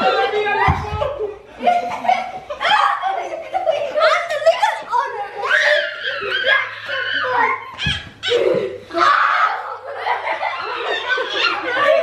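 A group of children and adults laughing and shouting over one another during rough play, with two dull low thumps, one just under a second in and one near eight seconds.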